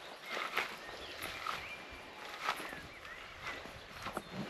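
Footsteps swishing through long grass, soft and irregular.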